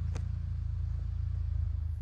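Cat D1 dozer's diesel engine idling with a steady low rumble.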